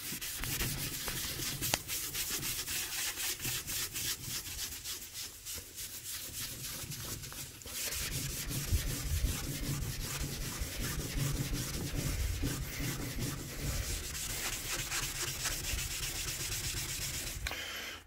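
Wet sponge scrubbing the glass door of a wood stove in rapid back-and-forth strokes, rubbing soapy residue and soot deposits off the glass.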